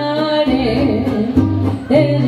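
Mariachi band playing live: singing over strummed guitars and a stepping bass line.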